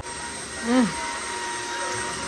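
Cordless wet-and-dry floor washer running on a tiled floor: a steady motor whine over an even hiss.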